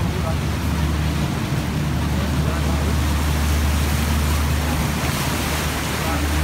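Tour boat's engine running with a steady low drone, under a haze of rushing water and wind on the open deck. A few faint voices are heard near the start.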